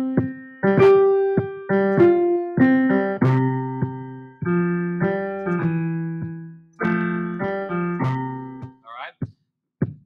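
Digital grand piano (BandLab's Grand Piano instrument) playing an improvised melody of single notes in C major pentatonic over a looping drum-machine beat at 100 bpm. Playback stops about nine seconds in.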